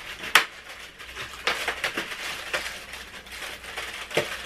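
Cardboard chocolate advent calendars being handled and their doors torn open: scattered crinkling and rustling of card and packaging, with one sharp crack near the start.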